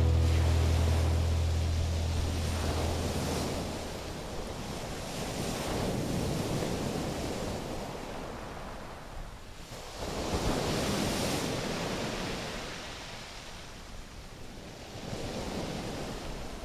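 Ocean surf breaking and washing ashore in slow swells that rise and fall, with wind gusting on the microphone. The tail of background music fades out in the first few seconds.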